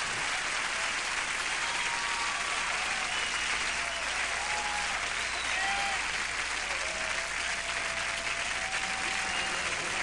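Audience applauding steadily at the end of a song, with scattered cheers over the clapping.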